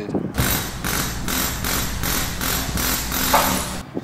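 Masking tape being pulled off the roll in one long rasping rip that pulses about three to four times a second, starting just after the beginning and cutting off sharply near the end.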